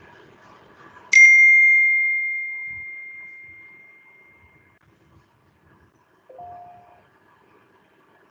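A single loud bell-like ding about a second in, ringing on and fading away over about three seconds. Near six and a half seconds a short, quieter two-note blip rises in pitch.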